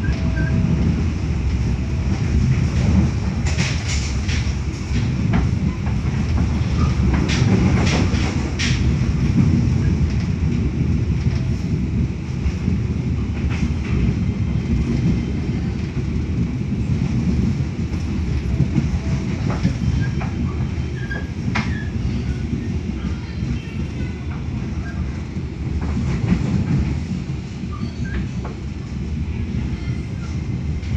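Moving passenger train carriage heard from inside: a steady running rumble of wheels on rails, with scattered sharp clacks as the wheels pass over rail joints.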